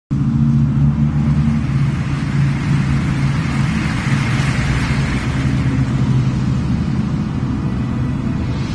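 Steady motorway traffic noise, with tyre hiss swelling and easing as a vehicle passes about four to five seconds in.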